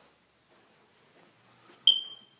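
Near silence, then a single short high-pitched beep near the end, starting sharply and fading away.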